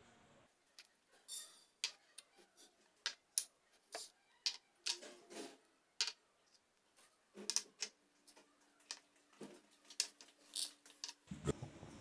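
Small batches of whole spices and seeds tipped into a dry metal frying pan, landing with faint, irregular clicks and brief rustles against the metal.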